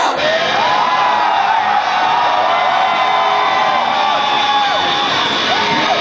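Concert crowd cheering and whooping, with many voices yelling over one another.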